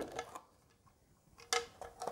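Light clicks as a grey plastic enclosure is handled and its lid lifted off: one sharp click about one and a half seconds in, then a fainter one.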